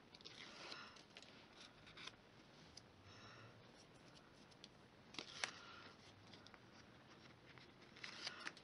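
Faint rustling and scraping of cardstock as it is pressed together and handled, with a couple of small clicks about five seconds in.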